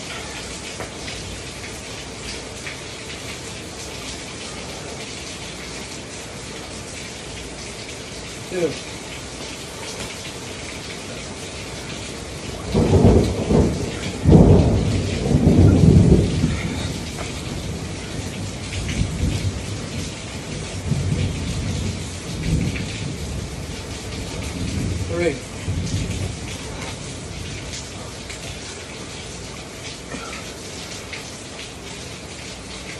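Steady heavy rain with a long roll of thunder. The thunder starts about a third of the way in, is loudest for a few seconds, and then rumbles on more softly before dying away.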